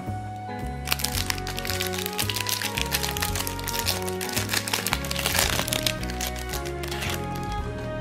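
Thin clear plastic sleeve crinkling as a trading card is worked out of it, a crackly rustle lasting about five seconds from about a second in, over background music with a steady bass line.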